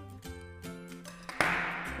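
Instrumental background music: a steady run of short struck or plucked notes. About a second and a half in, a brief rush of noise rises above it.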